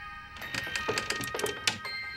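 Tinkling, bell-like chimes in a horror score: several high struck notes ring on over one another. A cluster of strikes comes in the second half, the sharpest near the end.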